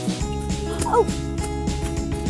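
Background music with a regular beat, and one short gliding cry about a second in.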